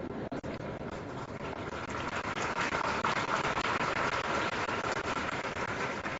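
Crowd noise from a large seated audience reacting: a dense wash of many voices and scattered claps that swells about two seconds in and eases toward the end.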